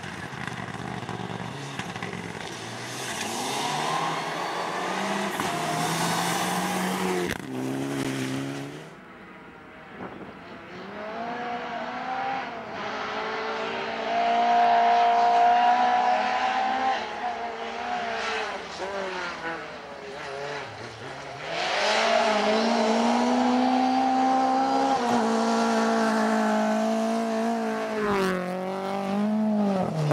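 Rally cars driven hard on a gravel stage. First a Mitsubishi Lancer Evolution rally car passes with its engine revving up and down. About ten seconds in a small hatchback rally car takes over, its engine rising and falling in pitch as it climbs through the gears and lifts between them.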